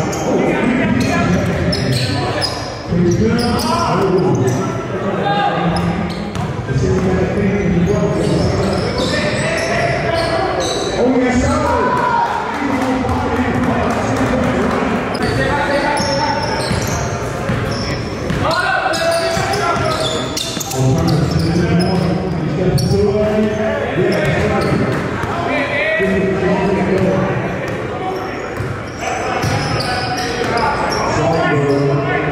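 A basketball bouncing on a hardwood gym floor amid continuous voices of players and onlookers, echoing in a large hall.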